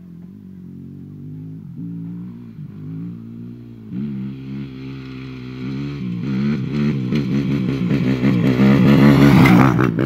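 Yamaha YZF four-stroke motocross bike approaching up a slope, its engine revving up and down and growing steadily louder. It is loudest just before the end as it comes up close.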